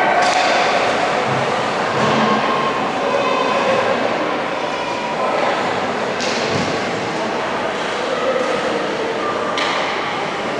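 Echoing indoor ice rink during a hockey game: voices of spectators and players carrying through the hall, with a few sharp knocks of sticks, puck or bodies against the boards.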